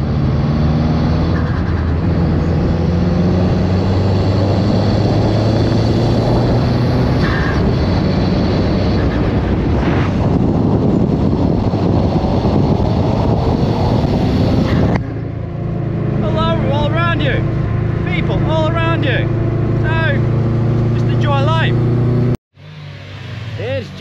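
Car engine and road noise heard from inside a moving car's cabin, loud and steady for about fifteen seconds, then quieter. The sound cuts off abruptly near the end.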